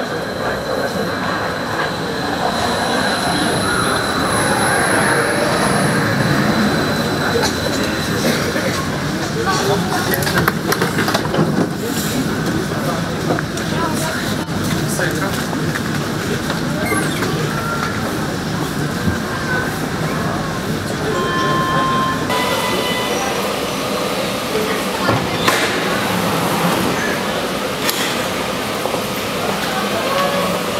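Vienna U-Bahn train at a station platform, with a thin high whine over the first several seconds as it comes in, and the chatter of a crowded platform throughout. A brief electronic signal tone sounds about two-thirds of the way through.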